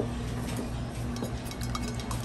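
A steady low hum in the background, with a few faint light clicks and clinks.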